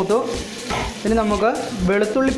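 Curry leaves and aromatics sizzling in hot oil in a wide steel pan, stirred with a metal ladle. A person's voice is heard over it in three short stretches and is louder than the sizzle.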